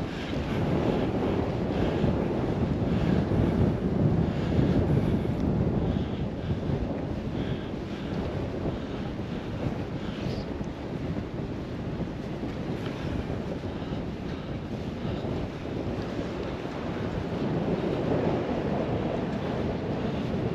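Wind blowing over the microphone, muffled by a wind cover, with small waves lapping against the rocky embankment. The gusts swell in the first few seconds and again near the end.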